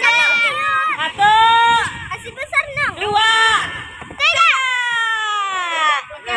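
High-pitched voices, likely children's, shouting in long drawn-out calls of encouragement, the last one falling in pitch near the end.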